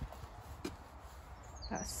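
Quiet background with a single brief click about two-thirds of a second in; near the end a small bird starts a rapid, evenly spaced, high chirping trill.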